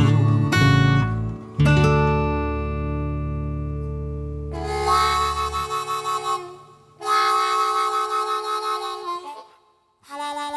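The closing bars of a country song: the band's final chord on acoustic guitar and bass rings out and fades. Then a harmonica plays two long, wavering chords, one about five seconds in and one about seven seconds in, and the second fades out to silence near the end.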